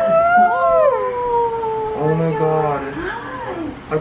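A long, drawn-out, high-pitched squeal of excitement from a person that slowly falls in pitch. A lower voice joins about halfway through.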